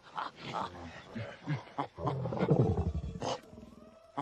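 Ape calling in a film soundtrack: a run of short calls, loudest and deepest between about two and three seconds in.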